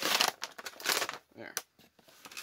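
Action figure's plastic blister packaging crinkling and tearing as it is pulled open, mostly in the first second.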